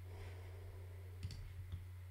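A few quick clicks at a computer, about four within half a second, a little over a second in, over a low steady hum.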